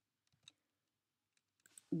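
A couple of faint, isolated clicks from a computer keyboard and mouse as typed text is edited, one at the start and one about half a second in.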